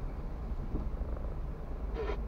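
Steady low rumble of a car's engine and tyres, heard from inside the cabin as the car rolls slowly in traffic.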